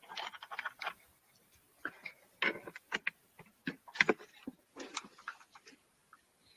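Irregular clicks, knocks and rustles of a headset being handled and put on close to the microphone.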